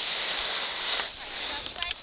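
Skis sliding on groomed snow, a steady hiss that eases off about a second in, with a few light clicks near the end.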